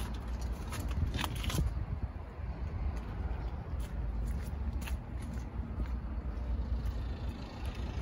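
A steady low outdoor rumble, with a few brief rustles and clicks from a handheld phone being moved around, about a second in and again near the middle.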